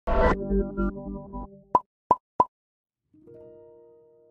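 Intro jingle: a brief musical flourish, then three short pops about a third of a second apart, then a soft held chord that slowly fades.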